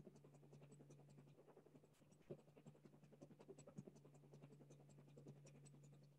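Faint, dense crackling and scratching, irregular clicks over a steady low hum.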